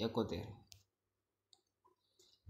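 A man's voice finishing a sentence, then near silence broken by two or three faint clicks.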